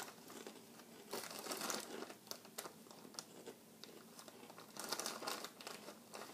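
Crinkling of a small plastic bag of Flamin' Hot Cheetos being handled, in two faint bursts, about a second in and again about five seconds in.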